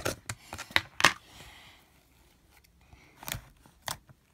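Fingers poking into a large tub of soft slime full of foam beads, making sharp little pops and clicks: a quick run of them in the first second or so, a pause, then two more near the end.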